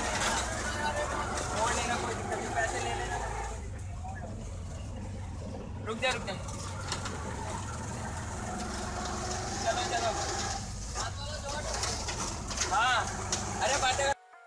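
Road traffic heard from inside a moving auto-rickshaw: a steady low engine rumble with passing vehicles, and pitched calls or voices at times.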